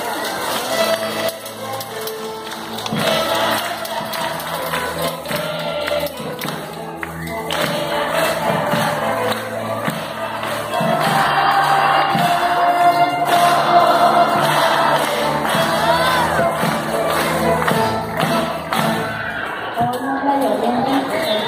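A string orchestra of violins, cellos and double basses playing, with voices singing along; the music grows louder about halfway through.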